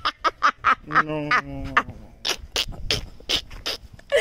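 A person making quick mouth clicks and pops, about five a second, with a short hummed note about a second in, in the manner of beatboxing.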